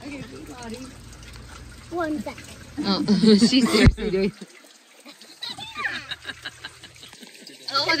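Water trickling from a small outdoor drinking fountain onto stone, with a sharp click about four seconds in.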